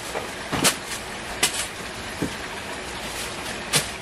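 Cardboard LEGO set boxes being handled and set down: a few short knocks and rustles over a steady background noise.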